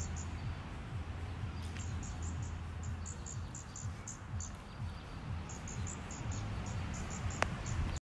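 Short, high insect chirps repeating in quick clusters over a steady low hum and hiss, with a single sharp click near the end.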